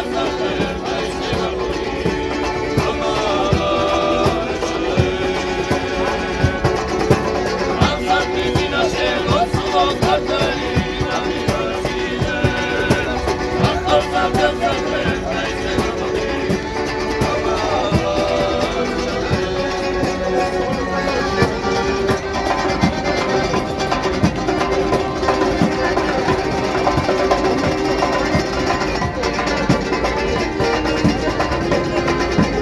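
Georgian folk street band playing live: a frame drum keeping a steady beat under plucked string instruments and an accordion.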